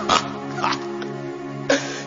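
Soft background music of sustained chords under the sermon, with a few short, faint vocal sounds.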